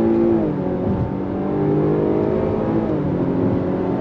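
Chevrolet Blazer's 3.6-litre V6 heard from inside the cabin, accelerating under throttle. Its pitch climbs, drops about half a second in as the 9-speed automatic shifts up, then climbs again.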